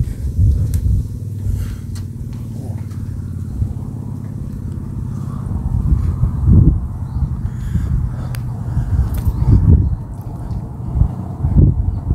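Wind buffeting the camera microphone: a loud, low rumble that surges in gusts a little past halfway and again near the end, with a few faint clicks.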